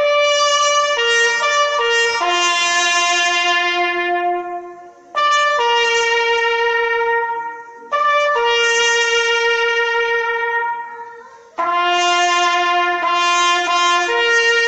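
Solo trumpet playing the slow call for a minute of silence: long held notes, one at a time, in phrases that fade out and begin again about five, eight and eleven and a half seconds in.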